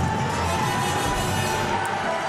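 Music playing over a cheering arena crowd.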